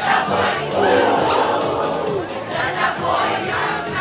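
Many schoolchildren's voices singing together over a karaoke backing track. The massed voices are louder than the music.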